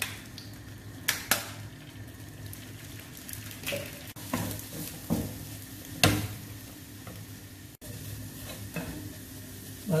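Two eggs frying in a nonstick frying pan while a wooden spatula breaks them up and scrambles them: a steady sizzle with several sharp taps and scrapes of the spatula against the pan, the loudest about a second in and about six seconds in.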